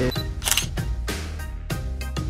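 Camera shutter sound effect over background music, a sharp click about half a second in, marking a snapshot being taken.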